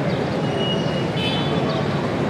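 Steady street ambience: traffic noise with faint voices in the background.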